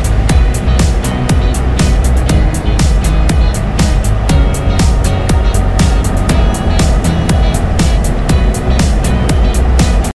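Outro music with a steady beat and heavy bass.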